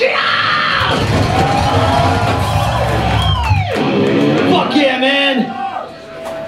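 Thrash metal band playing live: distorted electric guitars ring out with a heavy low end while the singer yells into the microphone. About three seconds in, a pitch slides sharply down, then shouting takes over.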